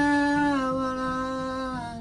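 A man's voice holding one long sung note over a live acoustic performance, the pitch dipping slightly about half a second in and the note ending near the end.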